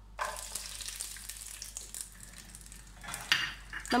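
Cashew nuts sizzling as they are dropped into hot melted ghee in a nonstick kadai. The sizzle starts suddenly just after the start, and a wooden spatula stirs them near the end.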